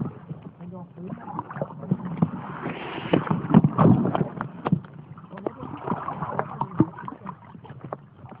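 Irregular muffled knocks and clicks, with muffled voices underneath; the loudest stretch is about three to four seconds in.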